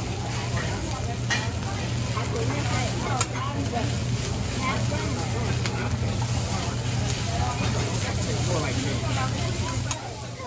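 Fried rice sizzling on a steel teppanyaki griddle while a hibachi chef scrapes and chops it with a metal spatula, with a few sharp taps of the spatula on the steel. Voices chatter and a low hum runs steadily beneath.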